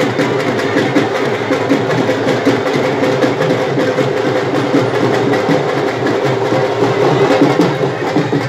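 Dhol drum beaten with sticks in a rapid, steady rhythm, its sharp strokes over a loud, dense din.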